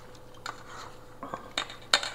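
Metal kitchen tongs clinking against a stainless steel mixing bowl of batter, a few short clicks, the loudest near the end, while turning a floured catfish fillet.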